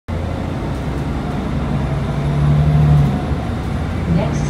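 Inside a Nova Bus LFS city bus under way: a steady low drone from the engine and road. An engine hum swells about halfway through, then drops back.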